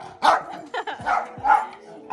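Small dog barking in a quick series of short barks.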